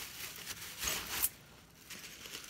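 Thin plastic bag rustling and crinkling as it is handled, with two short louder rustles about a second in.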